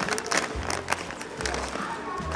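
A plastic snack bag crinkling and tearing as it is pulled open by hand, over background music.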